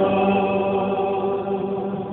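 Church choir singing one long held chord.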